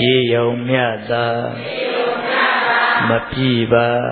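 Burmese Buddhist chanting: male voices reciting in long, drawn-out syllables.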